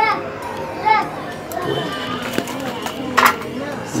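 Children's voices and chatter in the background, with a brief sharp noise a little after three seconds in.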